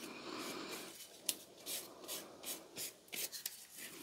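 Faint handling sounds from gloved hands turning a steel tommy axe head over: a soft rubbing, then a string of short, light scuffs of glove on metal from about a second in.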